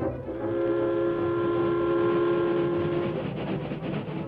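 Train sound effect: a steam locomotive whistle sounds one long chord of several notes for about three seconds, over the steady rhythmic clatter of the moving train.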